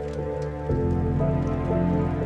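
Slow, melancholic piano music over steady rain falling. A deeper, slightly louder chord comes in under a second in.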